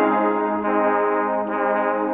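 Ensemble of seven trumpets playing a sustained multi-voice chord, the notes held steadily with small shifts in the voicing partway through.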